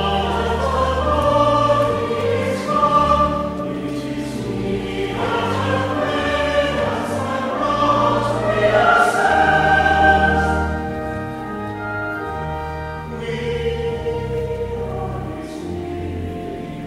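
Church choir singing with organ accompaniment, sustained sung lines over held low organ notes.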